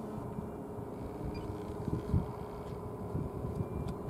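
Low rumble of wind on the microphone, with a faint steady hum and a soft thump about two seconds in.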